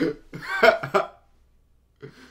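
A man laughing in a few short, breathy bursts that break off about a second in.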